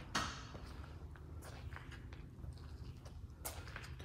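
Faint footsteps of a person walking, a few soft steps over a low steady hum.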